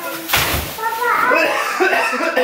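A small child's high voice calling out and chattering. Just before it, about a third of a second in, there is a short burst of handling noise from a plastic grocery bag.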